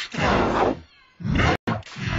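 Digitally distorted cartoon voice of Mickey Mouse, pitch-bent so that each drawn-out syllable slides downward like a wail or meow. There are about three such falling syllables, with a brief cut-out of the sound near the end.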